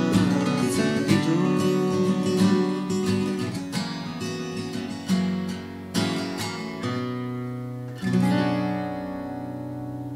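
Two acoustic guitars playing together, strummed for several seconds, then a few single chords struck about a second apart and left to ring, fading away near the end.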